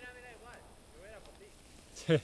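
A quiet pause holding only faint speech: a voice trailing off at the start and a few faint, distant words about a second in, over light background hiss.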